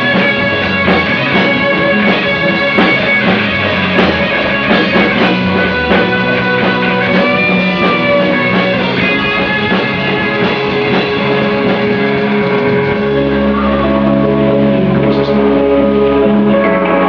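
Live rock band playing an instrumental passage: guitar over drums, with the bass growing fuller about thirteen seconds in.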